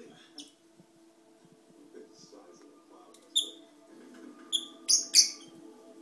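Black-masked lovebirds giving short, sharp, high-pitched chirps, four in the second half, the last two close together.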